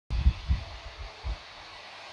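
A few dull low thumps and rumbles on a clip-on microphone, the loudest near the start and the last about a second and a quarter in, then a steady faint hiss of room noise.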